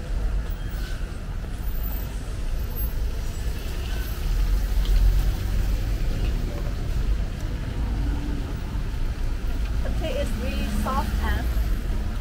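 Street ambience of traffic on a wet road: a continuous low rumble that swells about four seconds in, with a hiss of tyres and street noise over it.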